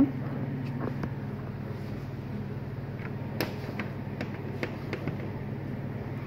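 A few short, light clicks from handling and unplugging a flat ribbon cable at the TV panel's connector, the sharpest about three and a half seconds in, over a steady low hum.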